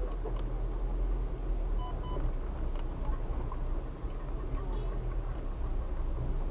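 Car cabin noise while driving slowly: a steady low engine and road rumble. About two seconds in come two quick high-pitched beeps.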